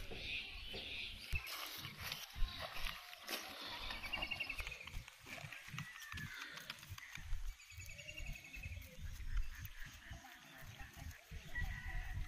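Birds calling outdoors: short, fast trills, repeated every few seconds, over an uneven low rumble.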